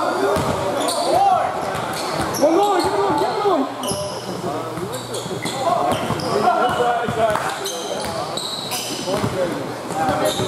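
Indoor basketball game: the ball bouncing on the court, with players' voices calling out throughout, echoing in the gym.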